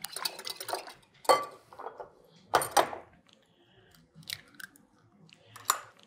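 Wire whisk beating eggs into buttermilk in a glass mixing bowl: irregular clicks and taps of the wires against the glass, in short flurries with pauses between them.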